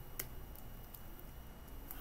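A single sharp click from computer input gear about a quarter second in, over faint room tone with a steady thin whine and low hum.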